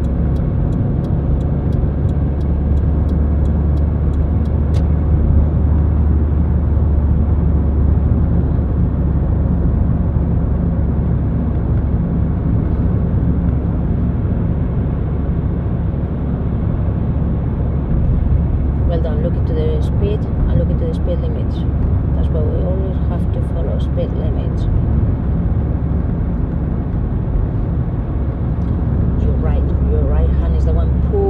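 Steady low rumble of a car's engine and tyres heard from inside the cabin while cruising at motorway speed, with faint talk in the second half.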